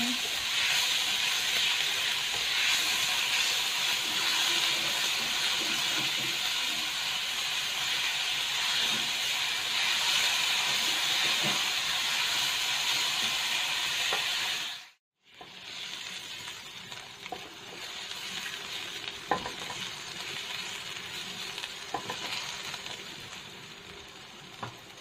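Minced garlic and shallots sizzling in hot oil in a wok while a silicone spatula stirs them. The steady sizzle cuts out suddenly a little past halfway and comes back quieter, with a few light spatula knocks.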